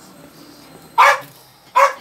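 A dog barking twice: two short barks, one about a second in and one near the end.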